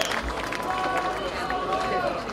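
Large outdoor crowd with many people talking over one another, a steady din of overlapping voices.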